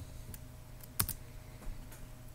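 A few scattered keystrokes on a computer keyboard, the sharpest and loudest about a second in.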